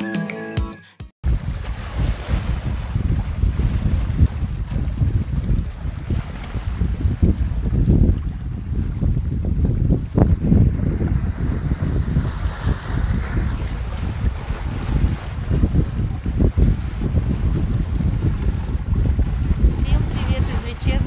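Small sea waves washing and breaking over shoreline rocks, with strong wind buffeting the microphone in uneven gusts. The last of a music track cuts off about a second in.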